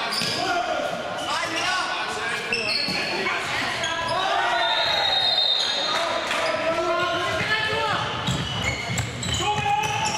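A handball bouncing on a hard sports-hall floor amid players' shouts, echoing in a large hall.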